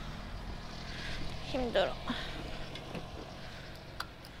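A 125cc motorcycle engine idling with a steady low hum, and a short voiced sound from the rider about one and a half seconds in.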